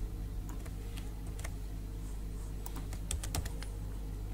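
Computer keyboard keys clicking in irregular, scattered strokes, with a steady low electrical hum underneath.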